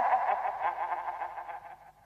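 Matango mushroom creature's eerie laughter sound effect, a warbling, echoing cackle that fades away and dies out near the end.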